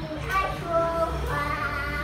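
A young girl singing a children's tune, holding its notes in a high, clear child's voice.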